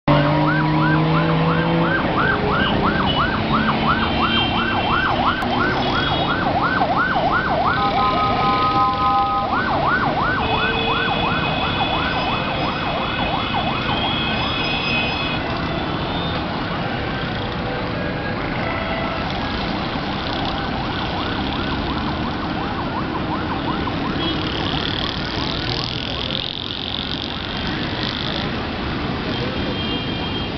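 Busy road traffic with an emergency siren wailing in a fast yelp, about four rising-and-falling sweeps a second. The siren breaks off briefly for a steady horn blast about a third of the way in, then resumes and fades out well before the end. Other vehicle horns sound over the continuous traffic noise.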